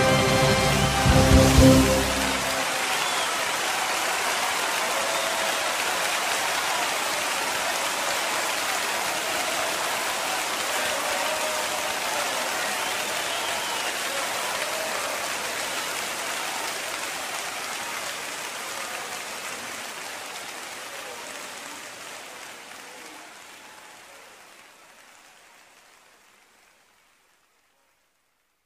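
A final loud chord ends the worship song about two seconds in. It is followed by a congregation applauding, steady at first, then fading out gradually over the last several seconds.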